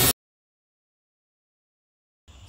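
A Milwaukee M18 cordless drill running as it bores a dowel hole through the jig's guide bushing, its whine cut off abruptly at the very start, followed by complete silence.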